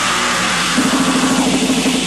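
Emo-violence hardcore punk played from a vinyl 7-inch: a loud, dense passage of distorted electric guitar without vocals, with a heavy low chord coming in about a second in.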